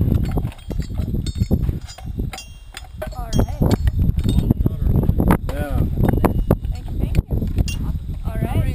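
Wind buffeting the microphone with a gusty low rumble, with brief fragments of voices and a few sharp clicks and clinks.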